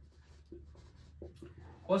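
Marker pen writing on a whiteboard: faint, short scratchy strokes as words are written.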